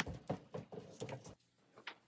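Faint clicks and crackles of hands handling raw spot prawns and their shells in plastic bowls, stopping after about a second and a half, then near silence.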